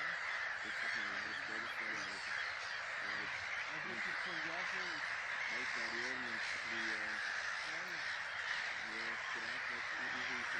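A flock of geese calling continuously, a dense steady clamour of honks.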